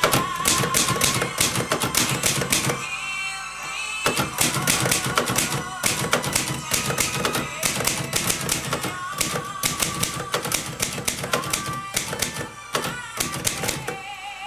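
Manual typewriter typing in quick runs of keystrokes, the type bars clacking against the platen, broken by a few short pauses. Music plays underneath.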